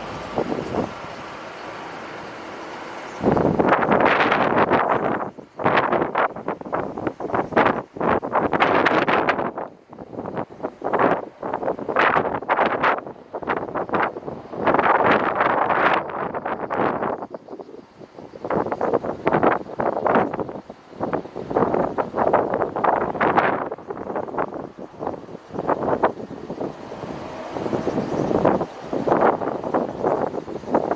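Wind buffeting the camera microphone: a steadier hiss at first, then loud, irregular gusts from about three seconds in.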